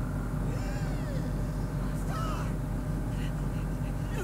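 Animated episode's soundtrack playing faintly, with a few short gliding, voice-like sounds about half a second in and again around two seconds in, over a steady low hum.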